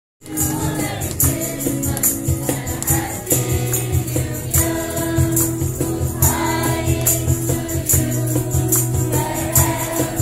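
A mixed group of carollers singing a Christmas carol together in unison, over a steady, high, jingling percussion beat. The sound drops out for a split second at the very start.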